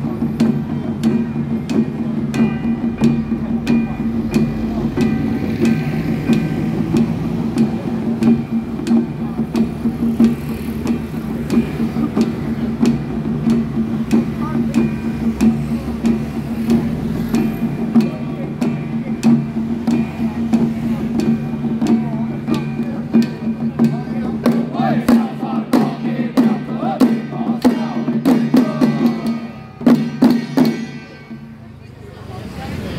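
Xiaofa ritual troupe chanting together on a steady pitch over a beat of small handheld drums struck with sticks, with a small gong. The strokes quicken over the last several seconds and the performance stops just before the end.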